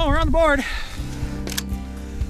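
A short wavering, voice-like call in the first half-second, then background music with held notes starting about a second in.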